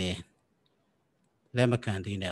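A man speaking: a phrase ends just after the start, there is a pause of over a second, and he goes on talking.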